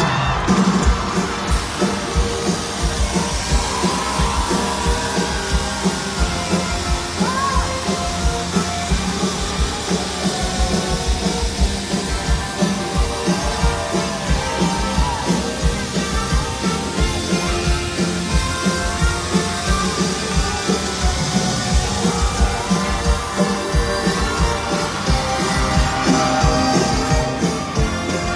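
Live pop-rock band music played loud over a concert PA, with a steady driving kick-drum beat about two a second and electric guitar.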